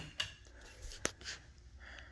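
A single sharp click about a second in, likely a wall light switch being flipped, over faint rustling from the phone being handled.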